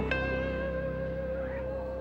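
Guitar in background music: a note slides up into one long held note.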